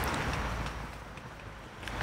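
Low, steady rumble of distant city traffic, which grows fainter about a second in.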